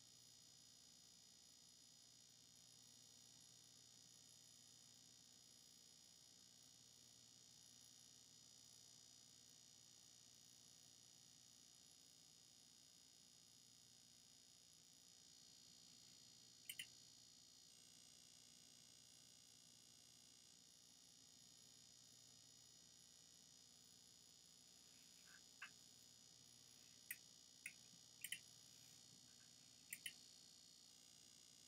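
Near silence: a faint steady hiss, broken by a few short, sharp clicks, one a little past halfway and several close together near the end.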